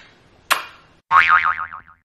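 A single lip-smack kiss about half a second in, then a short 'boing' sound effect whose pitch wobbles rapidly up and down before it cuts off suddenly.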